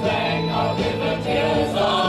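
Mixed choir of men and women singing a Christmas carol in three-part harmony, holding chords that shift from note to note.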